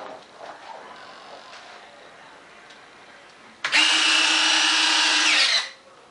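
Small electric motors of an RC jet's retractable landing gear cycling: a loud, steady whir that starts suddenly about three and a half seconds in and stops about two seconds later.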